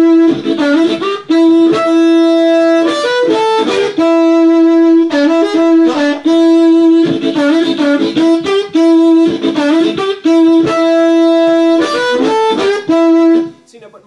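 Diatonic blues harmonica played in a rhythmic lick, with short notes bent and released sliding into long held draw notes, repeated in phrases. The playing stops suddenly near the end.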